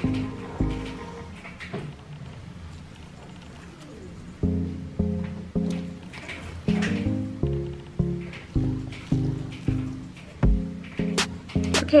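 Background music: a steady run of plucked notes, about two a second, that thins out about two seconds in and picks up again a little after four seconds.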